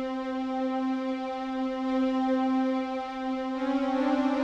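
A sampled string-ensemble note held steadily around middle C. Near the end a second, slightly higher string note joins it, and the two waver against each other.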